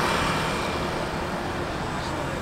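Road traffic noise: a steady hiss of passing vehicles that slowly fades.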